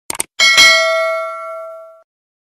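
Two quick clicks, then a single bell ding that rings and fades over about a second and a half: the sound effect of an animated subscribe-button and notification-bell graphic.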